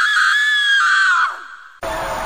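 A loud, high-pitched scream held for over a second, sliding down in pitch and trailing off; near the end a sudden loud, noisy sound cuts in.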